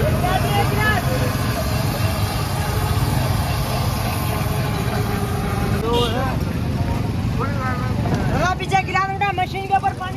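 Busy street ambience: a steady low rumble of idling vehicle engines and traffic, with people talking in short bursts, most busily near the end.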